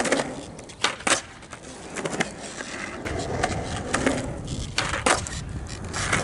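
Skateboard wheels rolling on concrete, broken by several sharp wooden clacks as the board's tail is popped and the board lands on attempted ollies.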